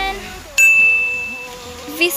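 A sudden high, steady tone starts about half a second in and holds for about a second before fading, over faint sustained lower tones.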